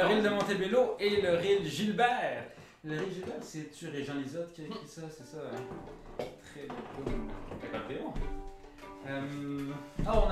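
Fiddle played quietly, with a few notes held steady near the end, and a man's voice over the first three seconds.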